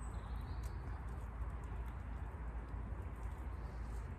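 Outdoor background noise: a steady low rumble, with a faint short high chirp about half a second in.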